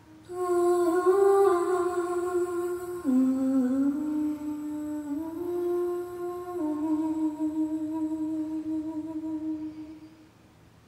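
Recorded music playing through a pair of Tannoy Kingdom Royal loudspeakers: a slow, wordless solo melody line of long held notes that glide from one pitch to the next. The line dips lower about three seconds in, climbs back about two seconds later, and fades out near the end.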